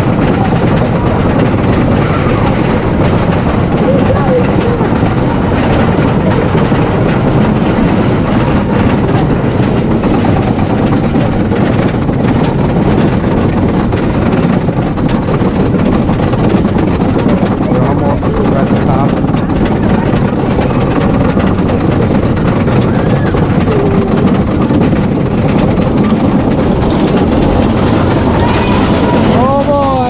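Wooden roller coaster train being hauled up its chain lift hill: a steady, continuous clatter of the lift chain and anti-rollback dogs under the cars, with riders' voices now and then.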